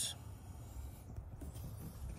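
Faint rubbing and rustling of a hand-held camera being moved around, over a low rumble.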